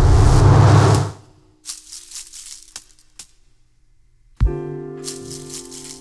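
Improvised experimental music: a loud swelling wash of processed sound breaks off about a second in, followed by sparse, dry rattling and scratching strokes from the leaves and branches of a plant played by hand. About four and a half seconds in, a low piano chord is struck and left ringing.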